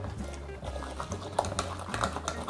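Background music, with a few light wet squishes and taps as a metal bean masher crushes cooked mango pieces in an aluminium pot, mostly in the second half.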